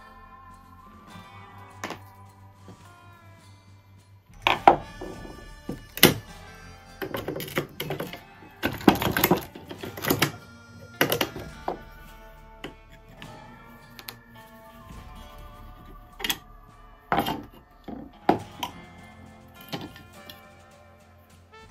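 Background music with a steady tune, over irregular knocks and clatters from a Stanley Bailey No. 27 wooden-bodied jack plane being taken apart by hand, its metal lever cap and iron knocking against the wooden body and the board. The knocks come in a cluster from about four seconds to about eleven seconds in, then a few more near the end.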